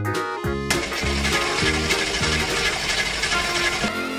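Background music with a car engine cranking over it in a dense, rattling grind from just under a second in until near the end, without catching.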